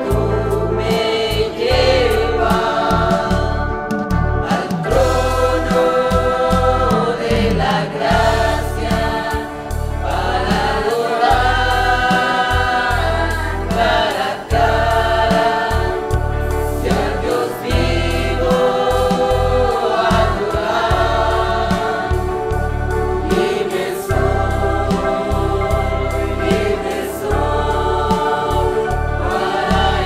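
Catholic worship song: sung voices, choir-like, over a steady bass and backing accompaniment.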